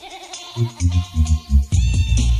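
Early-1990s hardcore rave music mixed by a DJ. The kick drum drops out briefly at the start while a warbling, bleat-like sample plays. The kick returns about half a second in, and a heavier full beat with dense bass comes in near the end.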